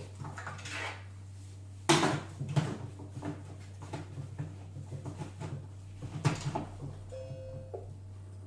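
Black plastic lid of a Silvercrest Monsieur Cuisine Connect food processor being fitted onto its stainless-steel mixing bowl and locked: a loud clack about two seconds in, a string of smaller knocks and clicks, another clack about six seconds in, then a short electronic beep from the machine near the end. A steady low hum runs underneath.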